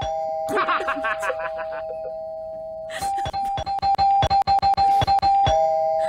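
An electronic ding-dong doorbell used as a drama sound effect, rung over and over: a held lower tone, then the higher ding from about three seconds in with a rapid run of knocks over it, dropping back to the lower tone near the end.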